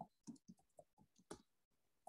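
Near silence with faint, irregular clicks and taps, about half a dozen short ones spread through the two seconds.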